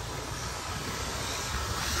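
Steady outdoor background noise, a low rumble under a hiss, growing slightly louder toward the end.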